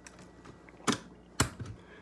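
Two sharp clicks or knocks about half a second apart, over quiet room tone.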